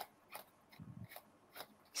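Faint soft snaps of Tally-Ho playing cards being passed one by one from one hand to the other, a few per second at an uneven pace.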